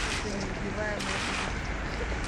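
Water drops from the BIT.FALL installation's overhead bar raining into the pool below, a splashing hiss that surges about a second in as a new burst of drops comes down.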